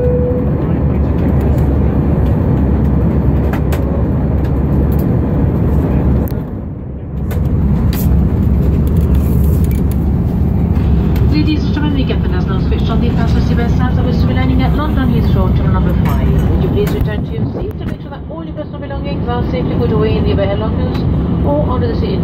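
Steady low drone of jet engines and airflow heard inside the cabin of an Airbus A319 airliner in descent, with a cabin announcement over it in the second half.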